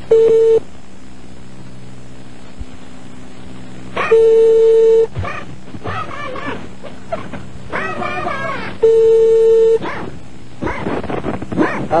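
Telephone ringback tone heard over the phone line: a steady low tone sounding three times, a short one at the start and then about a second each, roughly five seconds apart, the ringing signal of a call waiting to be answered. Between the rings a dog barks.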